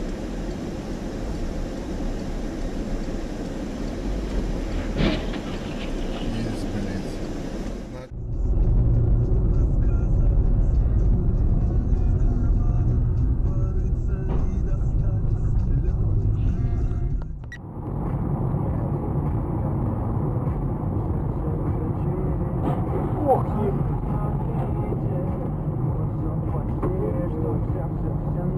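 Car cabin road and engine noise recorded by dashboard cameras while driving, in three clips that cut abruptly about 8 and 17 seconds in. The middle clip is louder and deeper.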